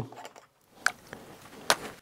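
Two light clicks, a bit under a second apart, from a small plastic bottle being handled and tipped over a bucket, with faint handling noise between.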